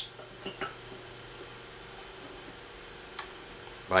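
Quiet room tone with a steady low hum. Two faint short clicks come about half a second in, and another faint click about three seconds in.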